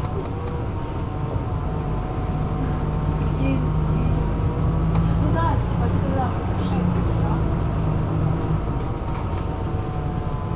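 City bus engine and running noise heard from inside the passenger cabin: a steady low drone that grows louder through the middle, with faint voices of other passengers.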